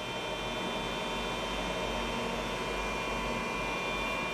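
Steady fan noise and electrical hum from running telecom lab equipment, with a few thin, steady high tones over an even hiss.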